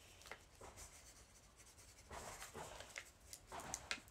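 Pencil writing on paper: faint scratching in several short runs of strokes.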